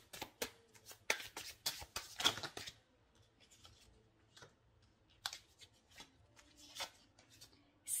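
A deck of tarot cards being shuffled and handled: a quick run of papery card clicks for about three seconds, then a few scattered taps.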